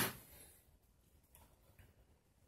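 Near silence: quiet room tone with a couple of faint, brief ticks, after a voice trails off at the very start.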